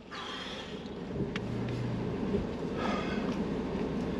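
Pickup truck's engine idling, heard from inside the cab, with a man breathing out heavily about three seconds in.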